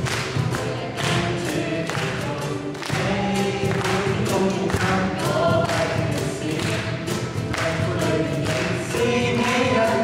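A small group of mixed voices singing a Christian worship song, accompanied by acoustic guitars and a cajón struck in a steady beat.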